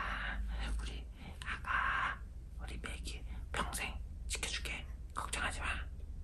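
A man whispering, in short phrases.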